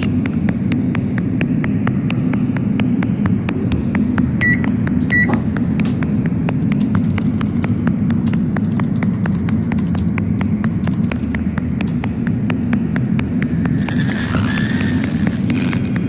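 Rapid computer keyboard typing over a steady low rumble, with two short electronic beeps about four seconds in. A hissing noise swells near the end.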